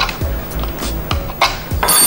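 Razor blade handled against tape on a foam-board airframe: a few light clicks and taps, then a brief high-pitched scrape near the end, over soft background music.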